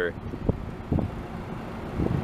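Outdoor ambience: a low, steady rumble with wind on the microphone, and two faint brief sounds about half a second apart.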